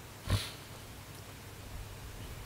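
A single short sniff from the host, close to a headset microphone, followed by quiet room tone.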